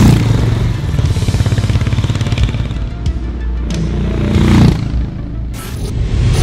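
Harley-Davidson X440's 440 cc single-cylinder engine running with a fast, even exhaust beat, then revving up briefly about three-quarters of the way in, mixed with a music score.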